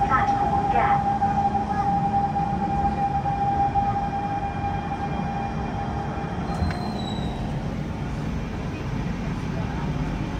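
Siemens C651 MRT train slowing to a stop at an underground platform, heard from inside the car: a steady running rumble with a high whine that fades as the train slows.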